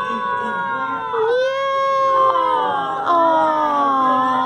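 A young child's drawn-out vocalizing in long, held, wavering notes, overlapping other voices, with a new long note about a second in and another about three seconds in.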